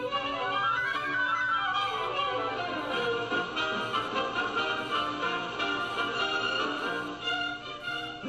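Orchestral background music with violins carrying the melody, which rises and then falls over the first few seconds.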